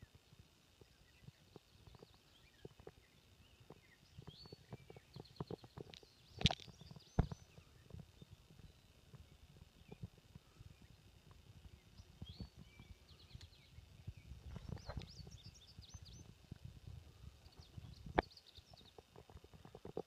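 Faint birdsong: small birds giving short high chirps and trills in scattered bursts. Quiet open-air background, broken by soft clicks and a few sharp knocks and low rumbles of handling noise on the microphone.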